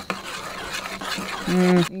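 A spoon stirring and scraping noodles in a small metal camping pot, a rough, irregular rasping. Near the end a woman's voice gives a short, loud hummed "mm".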